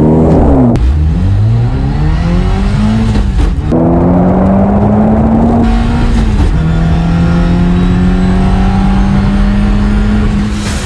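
PAL-V flying car's engine, driving on the road and accelerating: the engine note falls sharply and climbs again near the start, rises, breaks briefly about three and a half seconds in, then holds steady and steps down to a slightly lower note about six and a half seconds in, like gear changes.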